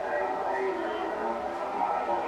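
People talking, with voices overlapping continuously.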